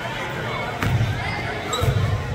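A basketball bounced twice on a hardwood gym floor, about a second apart, with voices in the gym behind it.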